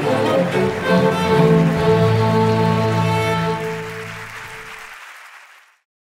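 Orchestral string music, violins and cellos holding long notes, fading out over the last two seconds into silence.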